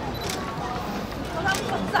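Camera shutters clicking several times over a background of voices.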